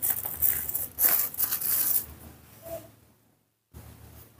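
A small knife cutting and paring papaya skin and flesh: a run of crisp scraping, tearing sounds over the first two seconds, then fading out.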